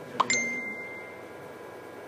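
Two quick sharp taps, the second followed by a short high ringing ding that fades out within about a second.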